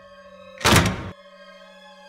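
Background music with steady held tones, broken about half a second in by one loud thump lasting about half a second that cuts off suddenly.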